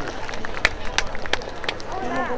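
Four sharp clicks or knocks, evenly spaced about three a second, over a background of low voices and outdoor noise.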